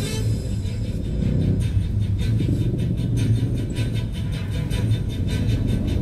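Background music from a radio news bulletin playing in a car, over the steady low rumble of the car moving in traffic, heard inside the cabin.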